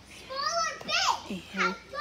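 Young girls' voices calling out in high, sliding tones as they play a make-believe game.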